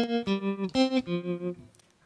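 Electric guitar played through a Digitech RP55 multi-effects processor: a short phrase of about five single notes, each ringing briefly, stopping shortly before the end.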